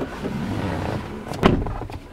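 Rustling and shuffling movement noise as someone settles into a car's driver's seat, with one sharp knock about one and a half seconds in.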